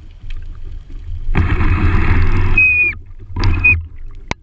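A free diver's two strong breaths heard through the camera housing: a long one and then a short one, each rushing and ending in a high whistle that falls off.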